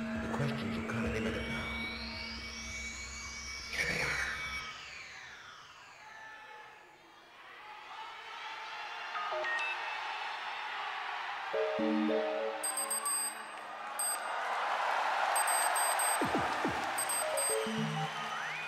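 Electronic sci-fi synthesizer intro: sweeping tones glide up and down over a low drone for the first few seconds. After a quieter stretch, short stepped synth notes and a swelling hiss build up in the second half.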